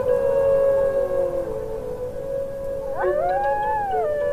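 A wolf howl rising steeply about three seconds in, holding a high note, and dropping near the end, over sustained low notes of a Native American flute. A fainter howl slides downward in pitch in the first second and a half.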